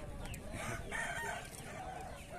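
A rooster crowing: one crow lasting about a second near the start.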